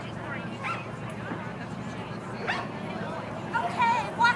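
A dog yipping and barking in short, high-pitched calls, several in a quick cluster near the end, over background voices.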